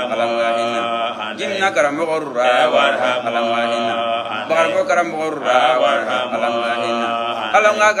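A man chanting Qur'anic verses in Arabic: a melodic recitation of long, ornamented held notes broken by short pauses for breath.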